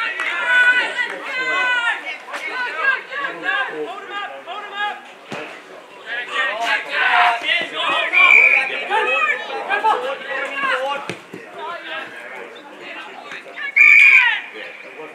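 Several voices shouting and calling out over one another, the sideline and on-field calls of a junior football game.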